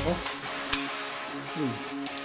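Background guitar music, with a single sharp click about three-quarters of a second in: a shot from a toy pellet gun fired at a balloon.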